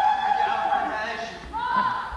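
Two high-pitched, drawn-out cries. The first starts suddenly and is held for about a second; the second rises and then holds, about a second and a half in.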